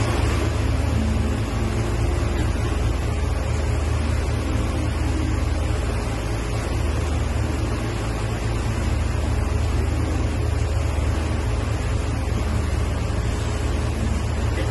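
Steady low drone of a river boat's engine under an even wash of wind and water noise.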